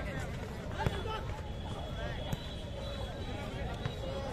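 Crowd of football spectators talking and calling out in a steady babble, with two short sharp knocks, about a second and two seconds in, from the football being kicked.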